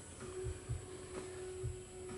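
A faint steady hum with a few soft, low bumps as plastic sprouting trays are handled.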